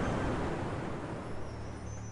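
Sea surf washing onto a sandy beach: a steady hiss of breaking waves that fades away near the end.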